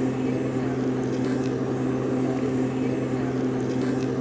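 Backpack motorized mist blower's small two-stroke engine running steadily, blowing insecticide spray out through its extension tube.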